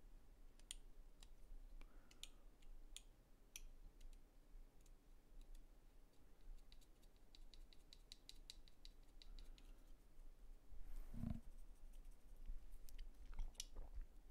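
Faint small clicks and light scraping of plastic model-kit parts being worked by hand, with a quick run of fine ticks a few seconds in and a soft thump a couple of seconds before the end.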